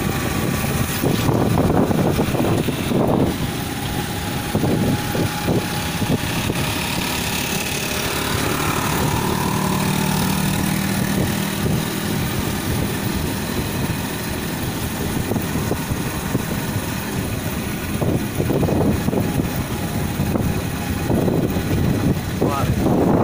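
A motor vehicle's engine running steadily as it travels along a road, with road and wind noise around it.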